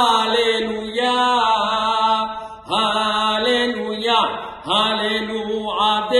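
A man chanting Hebrew Passover Haggadah liturgy solo, in long held, ornamented notes sung in several phrases with brief pauses for breath.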